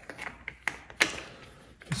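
A few light clicks and taps of a small metal hand tool and fingers against the plastic throttle position sensor cover, the sharpest about a second in.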